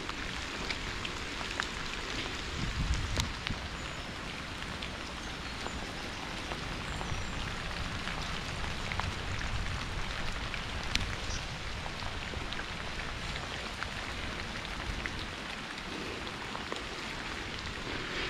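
Steady hiss of rain with scattered sharp ticks of drops, heard while cycling along a wet path, over a low rumble from the ride.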